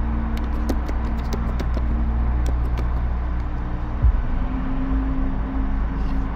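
Computer keyboard typing, a few scattered keystroke clicks over a steady low rumble and hum; the hum's pitch shifts about four seconds in, with a single thump.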